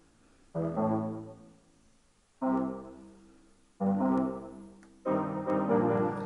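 Yamaha arranger keyboard playing a bass line: four separate low notes, each fading away, the fourth, about five seconds in, running on into a fuller passage of notes.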